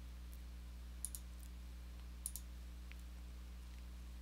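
Faint computer mouse clicks: a few single clicks and a quick double click about a second in, over a steady low electrical hum.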